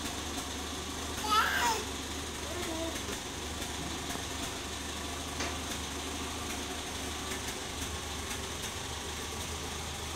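A steady mechanical hum in the background, with a brief faint voice about a second and a half in.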